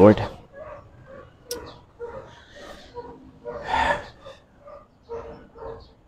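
A dog barking repeatedly in the background, faint short barks every fraction of a second, with one louder breathy sound about four seconds in.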